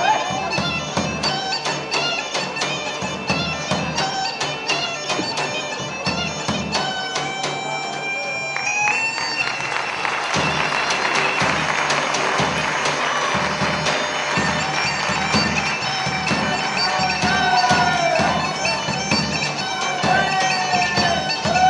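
Live Greek folk dance music: a reed wind instrument plays the melody over a steady beat on a large bass drum. About ten seconds in, the sound turns denser and noisier for several seconds.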